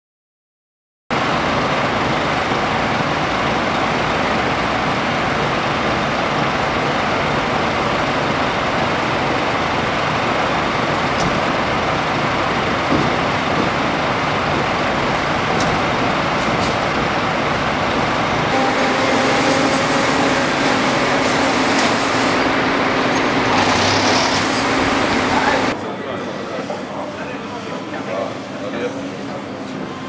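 Fire engine running loud and steady, a constant engine noise with no siren. About two seconds before the end it cuts to a much quieter indoor background.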